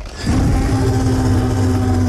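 Film-trailer sound: a loud, deep, sustained growling tone that starts about a quarter second in and holds steady for about two seconds.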